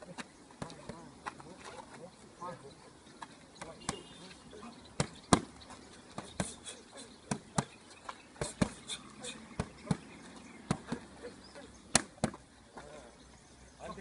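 Boxing punches smacking into handheld focus mitts: sharp slaps at irregular intervals, often in quick combinations of two or three. The loudest hits come about five seconds in and near the end.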